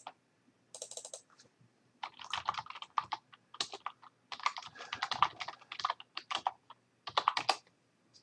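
Typing on a computer keyboard: a quick run of key clicks as a phrase is typed, after a short cluster of clicks and a brief pause near the start.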